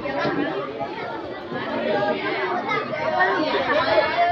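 Many children's voices talking over one another: a crowd's chatter.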